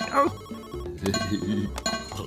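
Electronic beeping tune from an interactive video-game map screen, with a short clicking ringtone-like figure repeating about once a second. There is a brief rising vocal sound right at the start.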